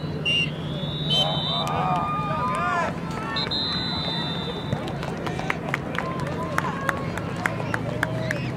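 Voices of players and spectators calling out across an outdoor youth soccer field, with two long high steady tones in the first half. A scatter of short sharp ticks follows in the second half.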